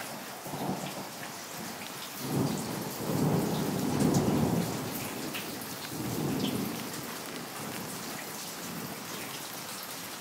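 Distant thunder rumbling over steady rain. The rumble swells about two seconds in, is loudest around four seconds, and comes back more briefly near seven seconds.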